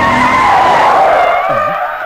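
Car tyres screeching in a hard skid: a loud squeal that slides slightly down in pitch and fades out in the second half.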